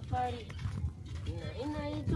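A person's voice talking in short phrases, over a low rumble.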